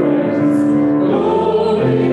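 Hymn sung by voices with piano accompaniment, moving through long held notes.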